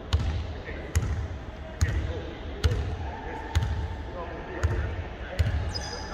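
A basketball being dribbled on a hardwood court, a steady bounce a little under once a second, seven bounces in all, with voices faintly in the background.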